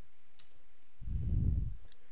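Two single keystrokes on a computer keyboard, about half a second in and just before the end, with a louder low muffled rumble between them, starting about a second in.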